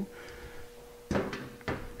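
A brief knock and rattle about a second in as a metal SU carburetor is handled, over a faint steady hum.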